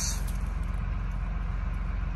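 A steady low engine rumble, as of a motor idling nearby, with an even hum and no change through the pause.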